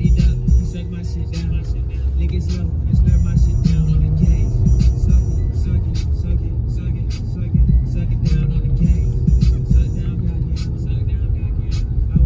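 Song with a heavy bass beat playing over a car stereo, heard inside the car's cabin.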